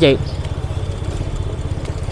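Small motorbike engine running steadily at low speed, an even, rapid low pulse with light road noise.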